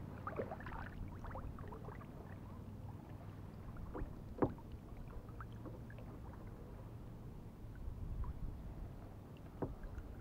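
Kayak paddling: the paddle dipping and pulling through calm water with light splashes and drips, and small clicks and knocks against the boat, the sharpest about halfway through.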